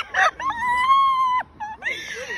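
A person's long, high-pitched excited call, held for about a second, with a few quick words just before it.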